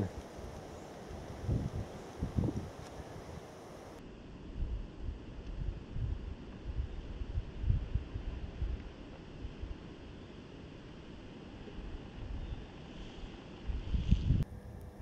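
Wind buffeting the camera's microphone in irregular low rumbling gusts, the "horrible noises" of wind in the microphone.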